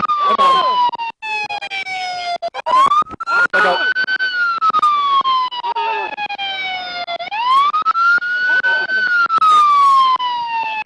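Police car siren on a slow wail, its pitch falling slowly and then sweeping back up, about every four and a half seconds.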